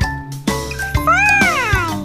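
Children's cartoon background music with a steady beat. About a second in, a cartoon creature's voice-like sound effect rises and then falls in pitch.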